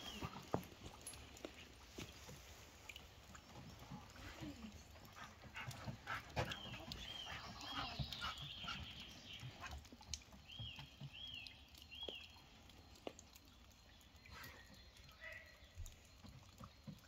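Footsteps and a dog's feet moving over a wooden porch deck, heard as faint scattered knocks and scuffs. Three short runs of high piping notes come near the start, at about seven seconds and at about ten seconds.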